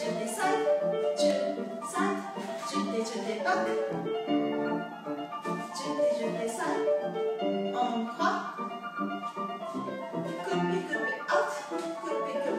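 Piano music for a ballet class exercise.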